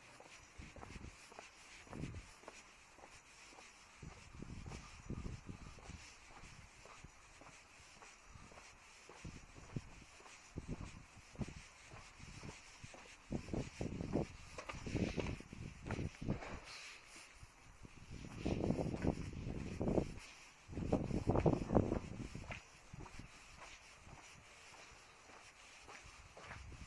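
Footsteps of someone walking on a concrete alley, with two louder bursts of noise, each a second or two long, about three quarters of the way through.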